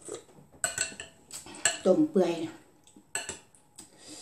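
Metal spoon clinking and scraping against a glass bowl while scooping soup, with several sharp clinks.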